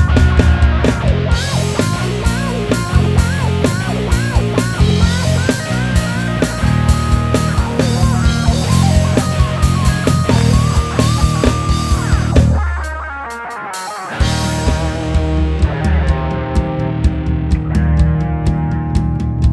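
Live rock band playing an instrumental section: an electric guitar lead with bent notes rides over bass and drums. About twelve and a half seconds in, the band drops out to a single held low note that fades, then everyone comes back in together.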